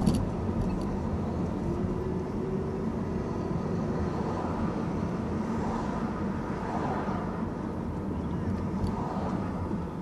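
Steady engine and road noise of a car driving slowly in city traffic, heard from inside the cabin through a dashcam microphone. A sharp click right at the start is the loudest moment.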